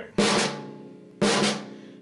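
Snare drum struck twice about a second apart in an accent-tap sticking, each accented stroke sharp and loud, then ringing out and fading.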